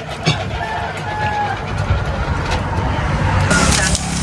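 A motor vehicle's engine running close by, a low rumble that grows louder over about three seconds and stops abruptly near the end.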